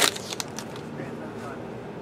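The end of a spoken word, then quiet room tone with a few faint light clicks.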